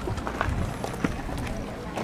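Indistinct nearby voices with footsteps and a low rumble of wind on the microphone.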